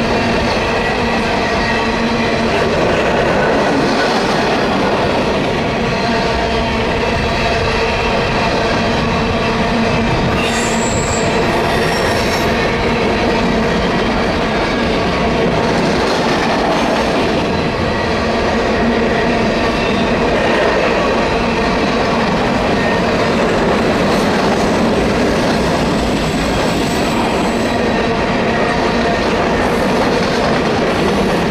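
Freight train of open-top gondola cars rolling through a curve: steel wheels rumbling and clacking on the rails, with a constant squeal from the wheels on the curve and a higher screech about ten seconds in and again near the end.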